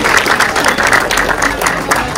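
A group of people applauding, many hands clapping at once.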